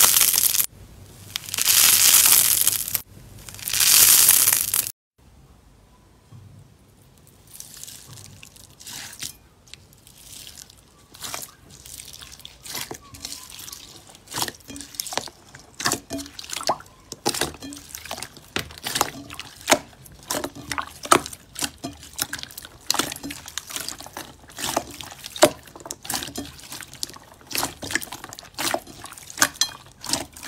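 Crunchy foam-crusted slime being pulled apart, giving three loud, long crunching, crackling bursts in the first five seconds. Then bead-filled clear slime is squished and pressed by hand, with wet squelching and a dense run of small clicks and pops that grows louder toward the end.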